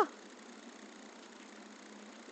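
Faint, steady outdoor background noise with no distinct sounds standing out.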